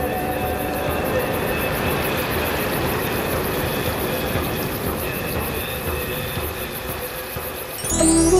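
Soft background music with a few faint held tones over a steady rushing noise.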